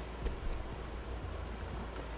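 Quiet room tone: a steady low hum with a faint tap near the start.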